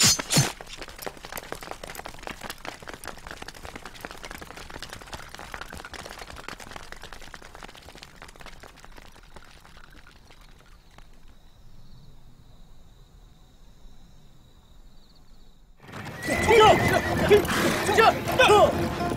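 A crash right at the start, then a long, faint stretch of crackle and hiss that dies away. About two seconds before the end, a troop of horses neighs loudly and gallops in, hooves clattering.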